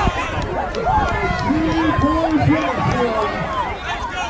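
Crowd of spectators shouting and cheering runners on, many voices overlapping, with one nearby voice calling out several times in the middle.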